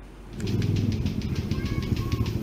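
A motorcycle engine running close by, coming in about half a second in with a rapid, rumbling pulse.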